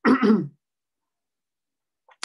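A man clearing his throat once, a short burst lasting about half a second at the very start.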